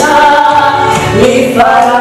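A male and a female singer singing a gospel song together through a church PA, holding long notes over an instrumental accompaniment, with a change of note about one and a half seconds in.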